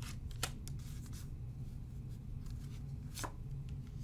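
A deck of oracle cards shuffled by hand, with a few separate sharp card snaps and slaps, over a steady low hum.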